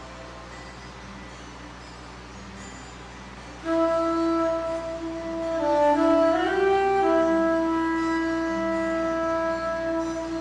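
Solo wind instrument playing a slow, soft melody; about a third of the way in it comes in loud on a long held note, bends down and back up, then holds another long note.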